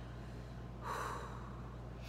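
A woman's single short breath, soft and airy, about a second in, over a low steady hum.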